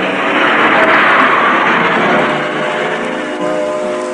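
Cartoon sound effect of a car driving past: a rushing noise that builds in the first second and fades out by about three seconds in. Sustained background music runs underneath.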